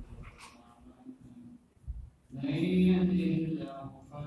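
A man's voice chanting the Arabic opening formula of a sermon, faint at first, then about two seconds in a long held note lasting about a second and a half.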